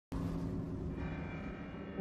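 A bell-like tone struck once right at the start, ringing on with many overtones and slowly fading, over a low rumble.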